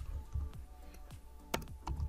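Computer keyboard typing: a few separate keystrokes, the clearest in the second half, over faint background music.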